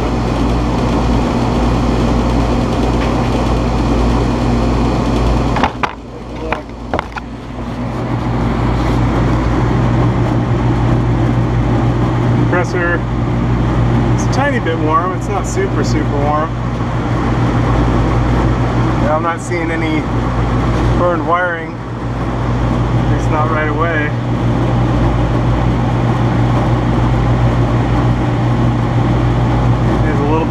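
Air-conditioning condenser fan motor running with a steady low hum while the compressor stays off: the unit has a stopped compressor. A few light knocks come about six seconds in.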